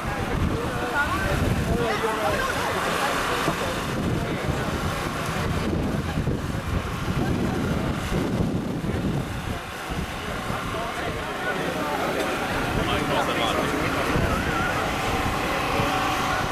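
Wind buffeting the microphone, a steady low rumble, over indistinct talking from a crowd of people gathered in the street.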